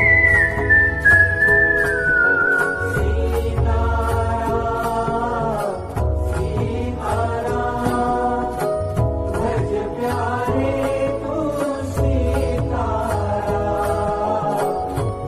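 A man's whistled devotional melody glides downward and drops out about two seconds in. After that, the backing track carries a chant-like sung melody over a steady low drum beat.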